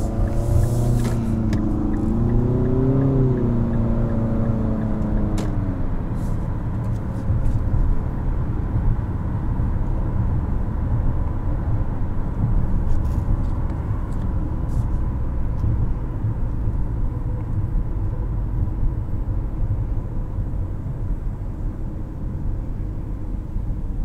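Inside the cabin, a 2022 Infiniti QX55's 2.0-litre variable-compression turbocharged four-cylinder pulls away under acceleration, its engine note rising over the first few seconds and fading out by about six seconds in. After that comes a steady low road and tyre rumble while cruising.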